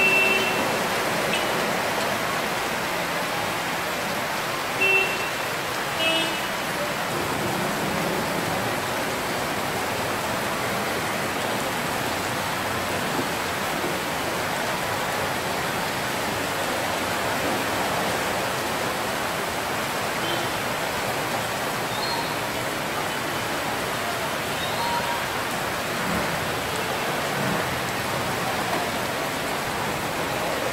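Heavy rain pouring steadily onto a flooded street, with a few short vehicle horn beeps in the first six seconds.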